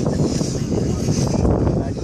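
Outdoor crowd chatter over a steady, uneven low rumble of wind buffeting the microphone.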